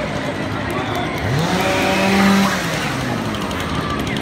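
A motor revving: its pitch rises sharply about a second in and holds high for about a second, along with a burst of hissing near the middle.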